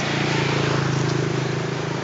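A small engine running steadily with a low hum over a background hiss.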